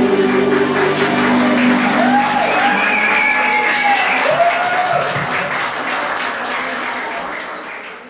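Audience applauding, with a few cheers from the crowd, as the song's last held chord dies away about two seconds in. The whole sound fades out near the end.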